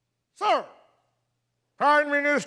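A man's short voiced sigh that falls steeply in pitch, about half a second in. A man begins speaking just before the end.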